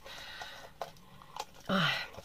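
A small plastic cosmetic bottle being handled, with a faint rustle and a couple of light clicks around the middle.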